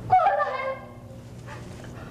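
A high-pitched voice crying out once near the start, a drawn-out call under a second long whose pitch slides down and then holds, in the middle of an emotional plea.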